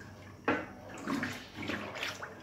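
Wooden paddle stirring a thin milk and rice-flour mixture in a large aluminium pot: the liquid sloshes and swishes irregularly, with a sharper splash about half a second in.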